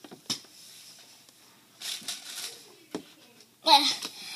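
A few soft clicks and a brief hiss about two seconds in, then a child's short, loud vocal outburst near the end.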